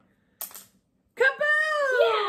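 A brief wooden clatter as a craft stick is drawn from a container, then, just over a second in, a woman shouting a long, drawn-out "Kaboom!" that falls in pitch.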